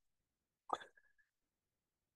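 Near silence, broken once, about two-thirds of a second in, by a brief vocal sound such as a quick intake of breath from the man between sentences.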